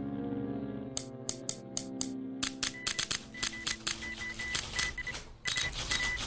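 Typewriter keys clacking, a few strikes about a second in and then fast and continuous, over sustained background music. An on-off high beeping tone joins about halfway through.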